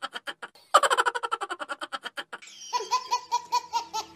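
Cartoon laughter sound effect: a fast string of short ha-ha bursts that breaks off briefly about half a second in. From about two and a half seconds in, a higher, sing-song laugh with a steady tone under it takes over.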